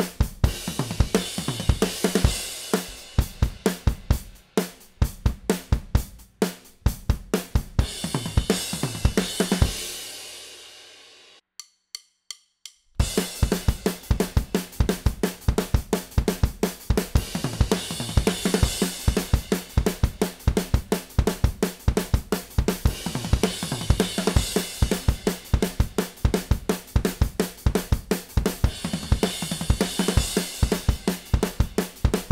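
Acoustic drum kit playing a punk/hardcore beat and fill on snare, bass drum, hi-hat and cymbals. About ten seconds in the playing stops on a ringing cymbal that fades out, a few faint clicks follow, and the beat starts again about thirteen seconds in.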